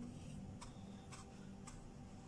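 Faint light clicks, three about half a second apart, as a kebab is pressed and rolled in a plate of breadcrumbs, over a low steady hum.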